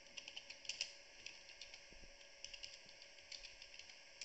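Faint typing on a computer keyboard: irregular short runs of keystroke clicks.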